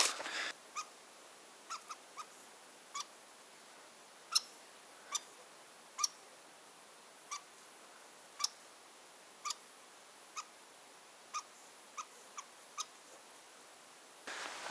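A run of about sixteen short, sharp chip-like calls, irregularly spaced at roughly one a second and varying in loudness, over a faint, quiet background.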